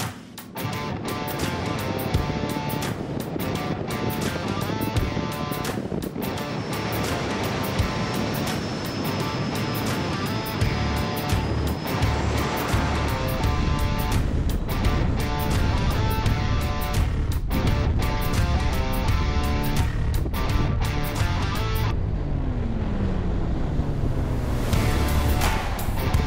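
Background music, with a heavier bass beat coming in about ten seconds in and a tone that slides downward near the end.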